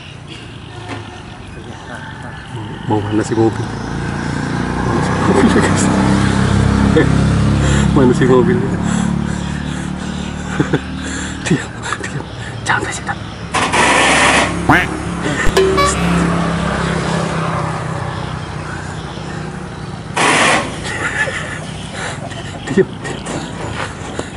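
A motor vehicle's engine that swells to its loudest about six seconds in and slowly fades. Two short rushing noises come later, one near the middle and one a few seconds after.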